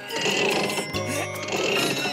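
Two matching cartoon sound effects about a second apart as crutches are pulled out of a doctor's bag, over children's background music.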